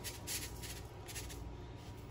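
Soft, repeated rustling and scraping of a spoon scooping sea salt and sprinkling it over raw beef ribs, several faint strokes about half a second apart.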